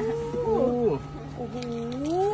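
A woman's drawn-out exclamations of "oh", gliding up and down in pitch: one in the first second and another near the end, over a steady low hum.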